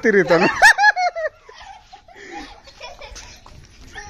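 Loud, high-pitched laughter in quick repeated bursts during the first second or so, then quieter giggles and voices.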